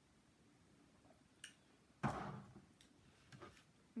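A person drinking juice from a plastic cup: a small click a little after one second, then a sudden breathy sound about two seconds in that fades over half a second.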